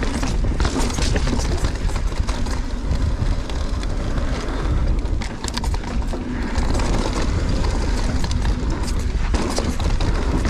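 A mountain bike descending a rocky dirt trail, with wind buffeting the microphone as a constant rumble. The tyres roll over dirt and rock, and the bike gives sharp clatters and knocks over rocks about a second in and again around five seconds in.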